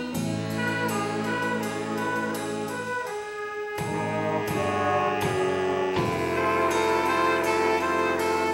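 High school jazz big band playing: saxophones and brass holding chords over piano and rhythm section, with a brief drop in the low notes about three seconds in before the full band comes back.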